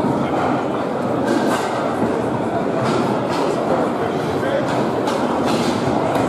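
Foosball play on a competition table: irregular sharp clacks of the ball and the plastic players striking, several in quick pairs, over the continuous babble and clatter of a busy playing hall.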